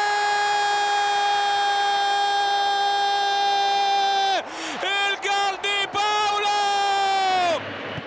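A male Italian football commentator's goal cry: one long shouted note held at a steady pitch, breaking about four and a half seconds in into a quick run of short shouted syllables, then a last brief held note, with faint crowd noise beneath.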